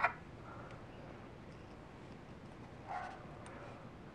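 Faint handling of paracord and a metal fid: quiet room tone with a few light ticks, and a short faint sound about three seconds in.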